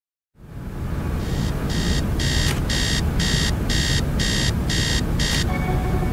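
Digital alarm clock beeping, about two beeps a second, starting about a second in and stopping about five and a half seconds in, over a low steady rumble.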